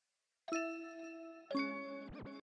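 Opening of a trap instrumental beat: after half a second of silence, bell-like chords strike about once a second, each ringing and fading.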